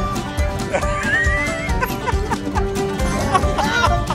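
Background music with a steady beat, with short high gliding sounds over it about a second in and again near the end.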